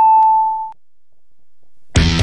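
Radio hourly time signal: a single long, high beep that stops about three quarters of a second in. A loud rock music jingle starts right at the end.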